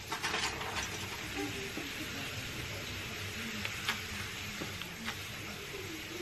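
Steady background hiss of room noise, with a few faint soft clicks and a faint voice low in the background.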